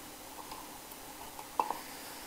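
Quiet room tone from a desk microphone with a faint steady hum. About one and a half seconds in, it is broken once by a brief, short sound.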